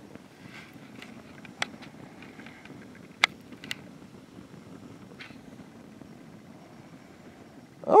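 Campfire burning with a low steady hiss and a few sharp crackling pops, the loudest a little past three seconds in.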